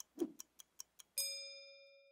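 Clock-ticking sound effect, about five quick ticks a second, then a single bell ding about a second in that rings out and fades. It is an animated time-passing cue for fifteen minutes gone by.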